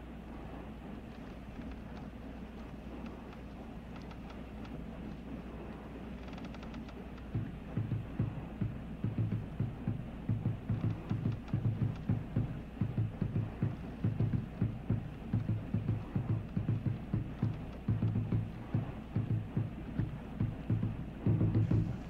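Low drums beating an uneven rhythm of about two to three strokes a second, starting about seven seconds in over a steady low hum. These are signal drums sounding from the shore.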